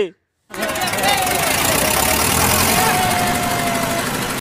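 A loud, steady, machine-like rushing noise that starts abruptly about half a second in, with a faint wavering tone running through it.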